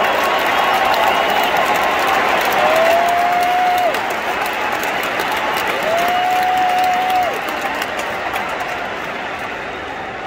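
Stadium crowd applauding and cheering. Two long held tones rise from within the crowd, one about three seconds in and another about six seconds in, and the applause slowly dies down toward the end.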